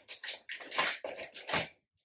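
Plastic shipping mailer bag rustling and crinkling in irregular bursts as hands rummage inside it, stopping shortly before the end.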